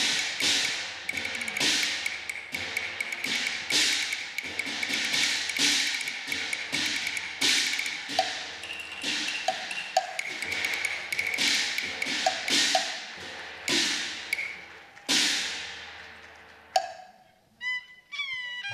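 Cantonese opera percussion playing a fast entrance passage of ringing gong and cymbal strikes with wood-block clacks, and a high held note above it. The strikes space out and die away near the end.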